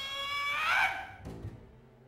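A high, sustained instrumental note from the opera's chamber ensemble, held steady, then bending upward and breaking off about a second in. It is followed by a brief low note, and then near-quiet.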